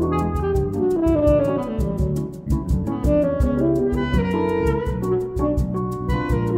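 Tenor saxophone playing a choro melody, backed by electric bass and percussion keeping a steady quick beat.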